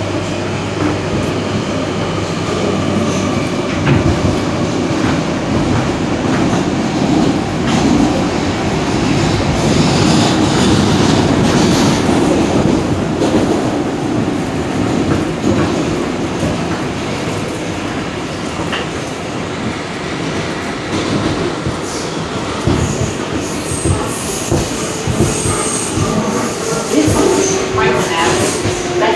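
New York City subway train heard from inside the moving car: a steady rumble of steel wheels on the rails with repeated clacks over the rail joints, and thin high wheel squeals in the last few seconds.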